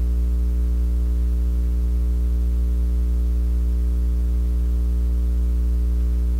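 Steady electrical mains hum with a stack of evenly spaced overtones, strongest at the lowest pitch and unchanging in level.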